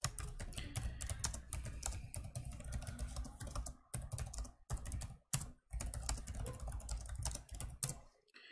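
Computer keyboard typing in quick runs of keystrokes, with short pauses about four and five seconds in.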